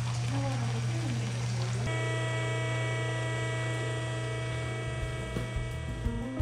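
A steady low electrical hum, with hot beet juice being poured from a stainless pot into a cloth filter during the first two seconds. From about two seconds in, several steady tones hold over the hum.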